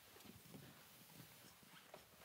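Near silence: room tone with faint, irregular footsteps on a carpeted floor as a person walks away.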